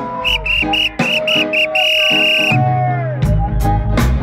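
Live reggae band playing, with a high whistle-like tone over it: several short notes, then one long held note. The bass line comes in about three seconds in.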